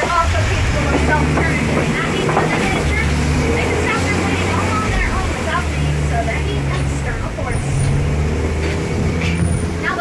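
Safari ride truck's engine running with a steady low drone as the vehicle drives along, its note dipping and picking up again a few times.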